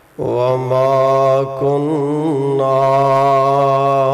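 A man's voice chanting one long, held melodic line that begins abruptly just after the start, keeping a steady low pitch with small ornamental turns.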